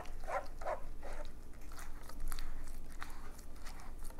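Silicone spatula stirring and pressing wet ground-nut pulp against a stainless steel mesh strainer to squeeze out the nut milk: wet squelching scrapes, a few louder strokes in the first second, then lighter scraping.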